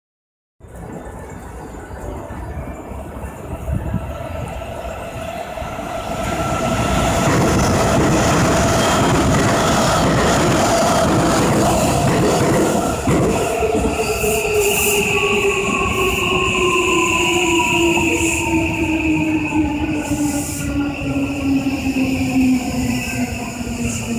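JR West 283 series limited-express train passing through the station, a loud rush of wheels and air at its height a few seconds before the middle. About halfway through, a 323 series commuter train pulls in, its traction motors whining steadily lower in pitch as it slows to a stop.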